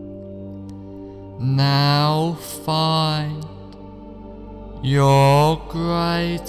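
Soft new-age background music of steady held tones, joined about a second and a half in by a slow, drawn-out, chant-like voice in four long phrases, the last near the end.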